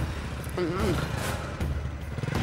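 Small single-cylinder motorcycle engine idling steadily, with a brief voice a little after half a second in.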